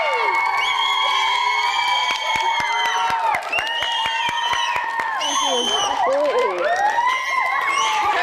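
A group of young children cheering with long high-pitched screams and whoops, mixed with hand clapping. The cheering dips a little past the middle and swells again near the end.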